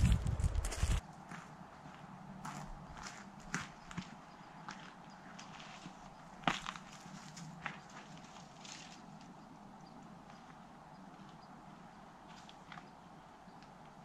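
Faint, irregular footsteps and crunches on rocky, twig-strewn ground, with scattered clicks, in a quiet forest. A loud low rumble fills the first second and stops abruptly.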